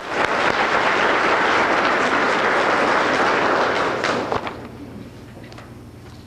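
Audience applauding, holding strong for about four seconds before dying away.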